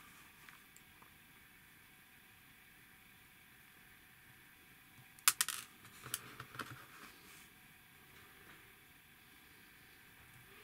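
Small plastic kit parts clicking as they are handled and pushed together by hand: a sharp double click about five seconds in, then a few lighter clicks, over quiet room tone.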